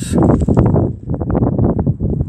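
Wind buffeting the microphone: a loud, uneven rumble with crackles, dipping briefly about a second in.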